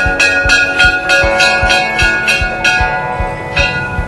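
Temple bells struck in quick succession, about four ringing strikes a second, thinning out near the end, over music with a steady drum beat.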